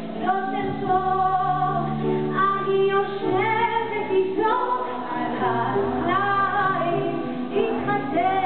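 A woman singing a Hebrew folk song live into a handheld microphone, in a run of phrases whose pitch rises and falls.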